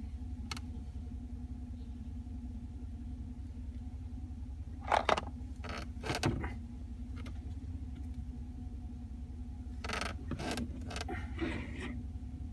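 Steady low hum of a truck idling, heard inside the cab. A few brief clicks and rustles from handling plastic queen cell cups come about five seconds in, again near six, and around ten to eleven seconds.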